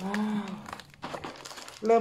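Scissors cutting through a packing-taped cardboard box, with irregular snips and the crinkle of plastic tape and card. It opens with a brief hummed voice.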